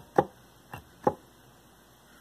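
Four short clicks in the first second or so, the second and fourth the loudest: buttons being pressed on the front panel of an Access Virus TI synthesizer.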